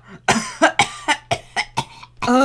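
A cartoon character laughing in short, breathy bursts, about six of them spread over two seconds.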